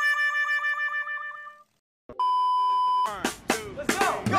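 Cartoon-style sound effects added in editing. A wobbling, warbling tone fades out over the first second and a half, then after a brief silence a steady beep sounds for under a second. Near the end come sharp clicks and the start of voices and music.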